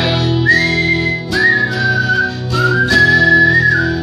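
Strummed acoustic guitar chords with a whistled melody over them: the whistle holds a few long notes one after another, stepping up and down in pitch.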